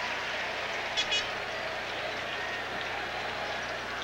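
Stadium crowd noise: a steady wash of many voices from the stands, with one brief high shout about a second in.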